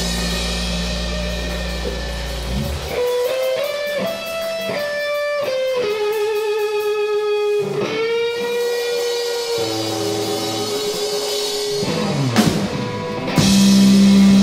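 Live rock band of electric guitar, bass guitar and drum kit. After a held chord the bass drops out and the electric guitar plays a line of bent and sliding notes with vibrato. Near the end a loud drum hit brings the full band back in with a strong low note.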